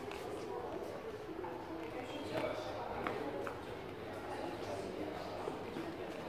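Indistinct voices talking in the background, with a few light knocks about two and three seconds in.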